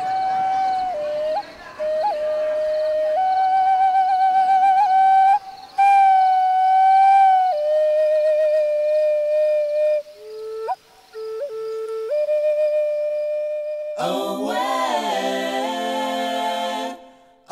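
A slow solo melody on a flute-like wind instrument: long held notes with vibrato, stepping between a few pitches, with quick upward grace notes. About two seconds before the end, a fuller sound of several voices singing together comes in.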